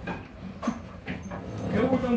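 A hand trigger-spray bottle of cleaner spraying a few short bursts, with a voice near the end.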